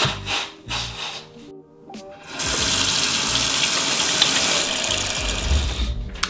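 A man blowing his nose into a tissue in short blows, then from about two seconds in a tap running steadily into a sink for hand-washing.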